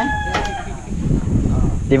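A rooster crowing, its long drawn-out final note ending about half a second in.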